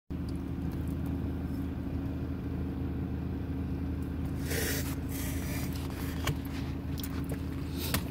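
Car engine idling, a steady low hum heard from inside the cabin. A brief rustle about halfway through.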